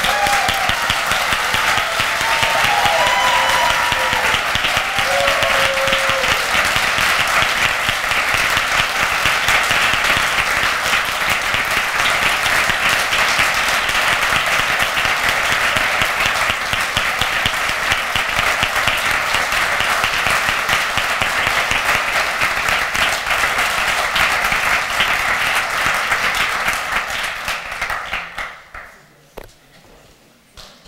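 Audience giving loud, sustained applause, a standing ovation in a hall; the clapping dies away near the end.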